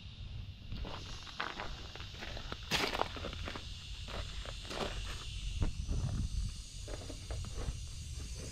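Footsteps crunching on gravel, with scattered light crunches and a sharper knock about three seconds in.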